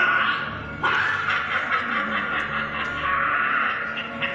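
A crowd of spectators laughing, the sound swelling suddenly a little under a second in and holding.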